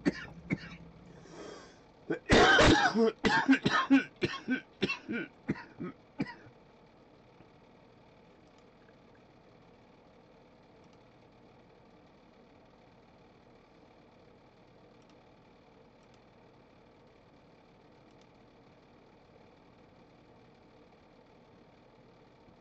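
A man's coughing fit: a rapid run of harsh coughs and throat-clearing that starts about two seconds in and dies away about six seconds in.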